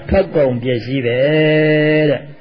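A Buddhist monk's voice chanting a slow recitation, the last syllable held on one steady pitch for about a second.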